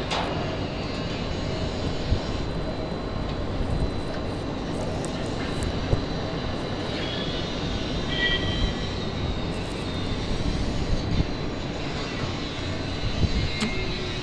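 Steady low rumbling background noise, with a couple of faint knocks.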